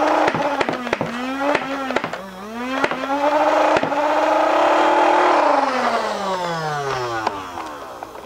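Supercharged Nerf Rival Charger, run on about 12 volts, firing a quick string of foam balls. Its motors whine at a steady high pitch, and each shot is a sharp crack that briefly drags the pitch down. From about five seconds in, the motors wind down, their pitch falling away.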